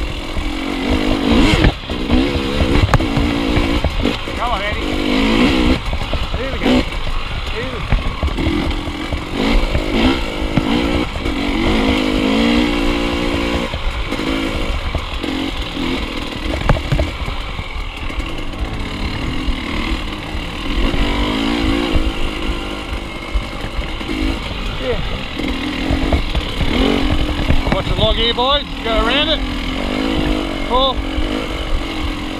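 KTM dirt bike engine running at low revs as it works slowly along a rough trail, the pitch rising and falling as the throttle opens and closes. Occasional short knocks from the bike over bumps.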